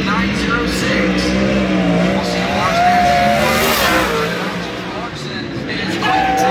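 A 410 winged sprint car's V8 running a qualifying lap. Its engine note rises and falls as it goes through the turns, with voices over it.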